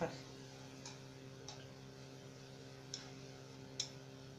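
A spoon clicking lightly against a metal roasting tray and foil, four times with the last click near the end the loudest, as butter and pan juices are spooned over a roast chicken. A steady low electrical hum runs underneath.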